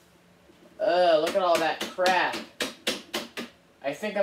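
Plastic dirt cup of a Eureka AirSpeed vacuum being emptied into a kitchen garbage can, with several sharp taps and knocks from about a second in. A person's voice runs over the taps.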